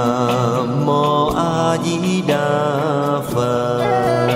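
Buddhist devotional chant sung as a slow melody over instrumental accompaniment, the voice holding long notes that waver in pitch.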